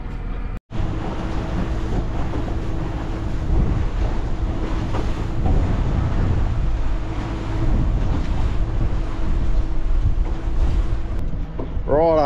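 A small boat running under motor across choppy open water, with a steady engine hum and wind buffeting the microphone. There is a brief gap in the sound about half a second in.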